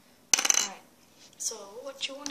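A sudden, short, sharp clatter with a click at its start, lasting about half a second.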